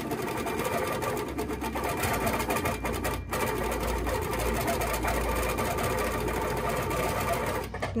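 Handi Quilter Capri stationary longarm quilting machine stitching in stitch-regulated mode while the quilt is guided by hand, so stitches form only as the fabric moves. It runs at a rapid, even pace with a brief break about three seconds in, and stops near the end.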